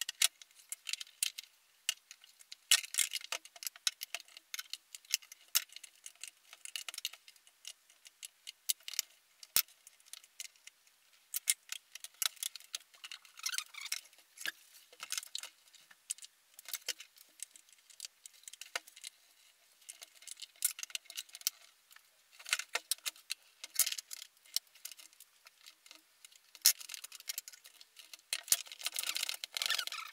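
Irregular small clicks, creaks and crackles of plastic as screwdrivers pry the lens of a Nissan Leaf LED headlamp away from its housing, the latches and stringy sealant giving way. The crackling grows denser near the end.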